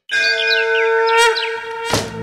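A conch shell (shankh) blown in one long steady note, with birds chirping over it and a sharp hit near the end.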